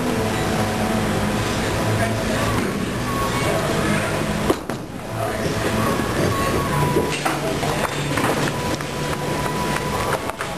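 Bowling-alley din of many voices over background music. A bowling ball lands on the lane with a sharp knock about four and a half seconds in, and the pins clatter a little after seven seconds.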